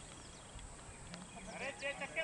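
Faint open-air ambience with distant voices calling out, coming in about a second and a half in, and a few short high chirps.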